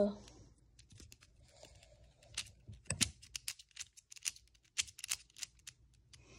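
A tiny non-magnetic keychain GAN 3x3 speed cube being turned by hand: a run of irregular, quick plastic clicks as its layers snap round, busiest in the second half.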